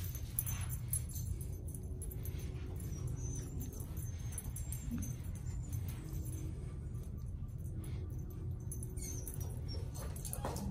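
Steady low room hum, with faint scattered ticks and rustles from a small dog moving along a line of plastic cups on a carpeted floor.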